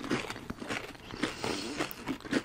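Close-miked chewing of edible crystal candy: irregular small crunches, clicks and wet mouth sounds.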